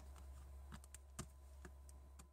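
Near silence broken by a few faint, short clicks and taps as hands press a magnet sheet of metal dies into a clear plastic stamp case, the clearest just past a second in.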